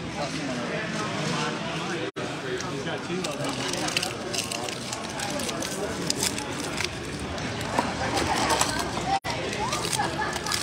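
A foil trading-card pack wrapper crinkling and tearing open in the hands, a run of short crackles through the second half, over steady background chatter of voices.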